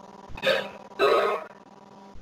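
A person's voice making two short non-word sounds, about half a second and about a second in, the second one longer.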